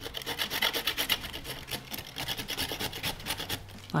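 Carrot being grated by hand on a flat stainless-steel grater laid on a wooden cutting board: quick, steady rasping strokes, several a second.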